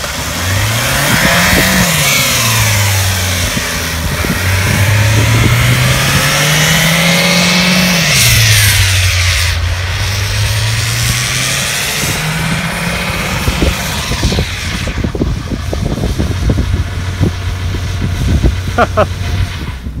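Saturn sedan's four-cylinder engine revving hard in a burnout, its drive wheels spinning against the ground. The revs climb and drop back twice in the first eight seconds, then hold steady with scattered crackles near the end.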